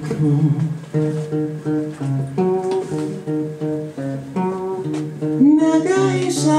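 Acoustic guitar strummed live, short rhythmic chord strokes with the chord changing every second or so.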